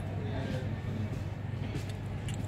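Room tone: a steady low hum with faint voices talking in the background and a few light ticks near the end.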